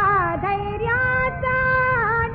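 Female Hindustani classical voice singing a Marathi abhang. A note bends and glides downward, then rises to a higher note that is held steadily through the second half.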